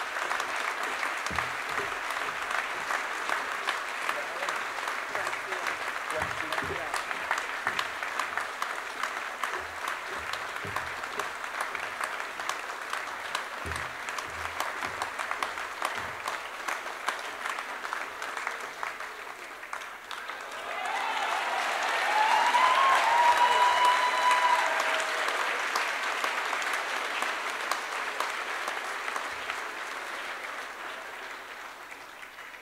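Large audience applauding steadily in a big hall, the clapping swelling louder about two-thirds of the way through, with a single high whoop rising over it.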